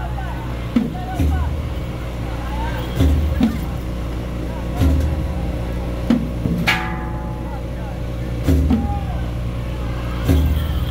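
Procession drum beating slowly and heavily, about one stroke every two seconds, over a steady low engine hum and crowd chatter. One sharp ringing strike comes about two-thirds of the way through.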